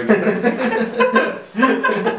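Two men laughing and chuckling together, with scraps of speech mixed in.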